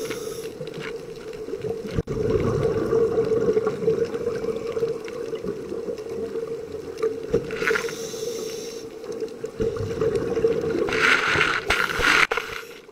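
Underwater sound of a scuba diver breathing through a regulator: hissing bursts of air and bubbling exhalations, at the start, about eight seconds in and again near the end, over a steady hum.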